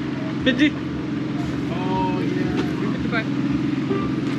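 An engine runs steadily at constant speed, a low even hum under people's voices.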